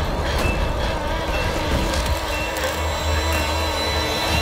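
Dense, loud horror-trailer sound design and score: a sustained roaring wall of noise over a deep rumble, with faint wavering tones held throughout.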